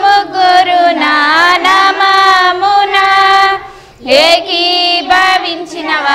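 A group of girls and an elderly woman singing a Telugu Christian hymn together, reading from hymnbooks and holding long notes. About two-thirds of the way through they pause briefly for breath, then start the next line.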